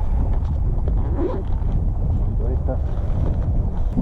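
Wind buffeting the microphone: a steady, loud low rumble, with brief faint snatches of a voice.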